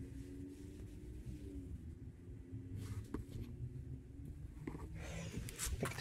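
Quiet room tone: a steady low hum with a few faint clicks, and a louder rustle of handling noise in the last second.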